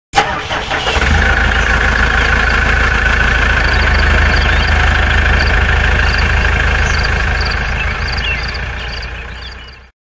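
An engine starting and then running steadily, loud, fading out over the last two seconds.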